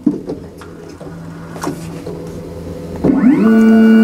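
xTool S1 laser engraver's gantry stepper motors moving the laser head during its automatic thickness and focus calibration. A quieter stretch with a few short clicks is followed, about three seconds in, by a whine that rises in pitch and then holds steady and loud as the head travels.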